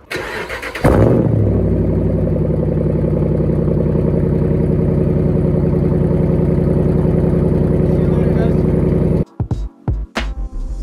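Dodge Ram 1500's 5.7 L Hemi V8 cold-started through a bedside-exit exhaust. The starter cranks for under a second, the engine catches with a loud flare about a second in, then settles into a steady idle. The sound cuts off suddenly near the end.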